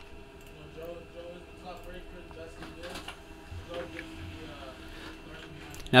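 A desktop printer running a print job, faint and steady, with a few light clicks.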